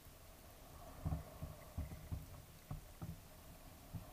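Faint, irregular dull low thumps of water moving against an underwater camera, about six in four seconds, as divers fin past it.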